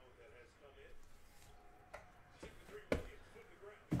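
Quiet room with a few light clicks and taps, the sharpest about three seconds in, as a plastic toploader card holder is handled and set down on the table.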